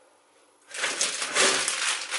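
Plastic bag of bread rolls crinkling and rustling as it is grabbed and handled, starting suddenly less than a second in.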